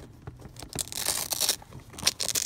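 Hand handling a sneaker and its materials: scratchy rustling and crinkling with small clicks, loudest about a second in.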